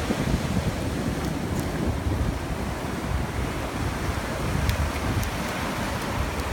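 Ocean surf breaking and washing up the shore in a steady wash of noise, with wind buffeting the phone's microphone in a gusty low rumble.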